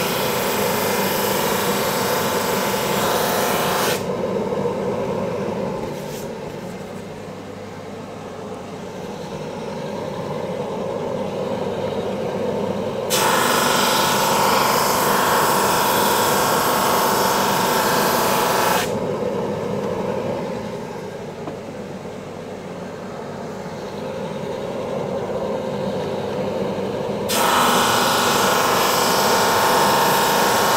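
Carbatec drum sander running together with a dust extractor, a steady hum, broken three times by a much louder, even sanding noise as plywood passes under the drum: at the start, again for several seconds around the middle, and again near the end. Each pass takes the plywood down a little in thickness.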